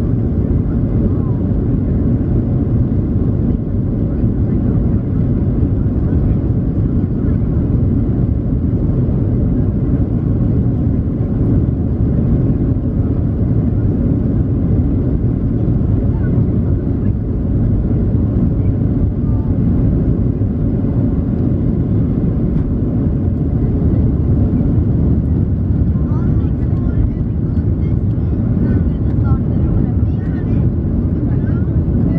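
Steady low rumble inside the cabin of a Boeing 737-700 on its takeoff roll, its CFM56-7B turbofans at takeoff power and the wheels running on the runway, carrying on as the airliner lifts off.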